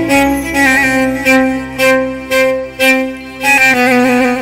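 Live Arabic wedding-band music: an instrumental melody in a violin tone, held notes with slides and ornaments between them, over a steady low backing.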